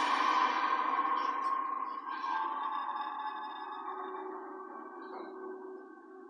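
Film score: eerie sustained electronic tones that swell loudest at the start and slowly fade away, played through a television's speakers.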